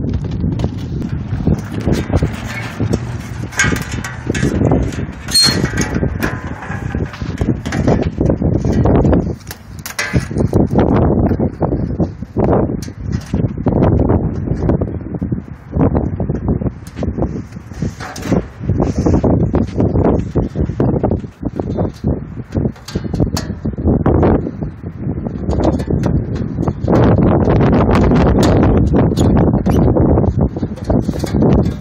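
Wind buffeting the microphone, a loud, uneven low rumble that swells and drops, with scattered small clicks and knocks from handling the wiring and the wire fan grille.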